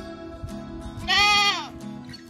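A goat bleating once, starting about a second in: a loud call about half a second long that drops in pitch as it ends.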